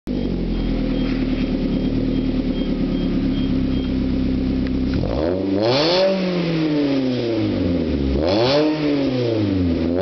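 Suzuki SX4's four-cylinder engine through a 2.5-inch stainless steel MagnaFlow cat-back exhaust, idling steadily. It is then revved twice, about halfway through and again near the end, each time climbing in pitch and dropping back to idle.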